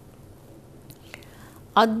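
A pause in a woman's speech: low room tone with a couple of faint clicks about a second in, then her voice resumes near the end.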